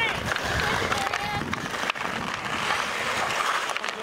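Ice hockey skates scraping across outdoor ice and sticks clacking against each other and the puck in a close battle for the puck. A few voices call out briefly early on.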